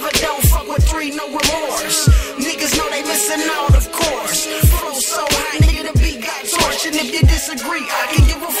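Hip hop track: a rapper's voice over a beat of deep bass kick drums that drop in pitch, hitting roughly twice a second.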